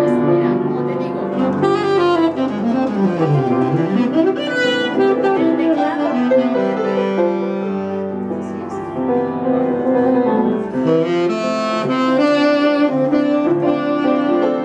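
Saxophone and upright piano playing together live, the saxophone carrying the melody over piano accompaniment, with a run sweeping down and back up a few seconds in.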